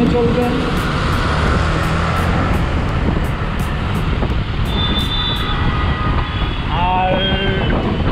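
Wind rushing over the microphone together with engine and road noise from a Yamaha MT-15 motorcycle riding at about 50 km/h in city traffic. A brief high tone sounds around five seconds in, and a short pitched sound follows about two seconds later.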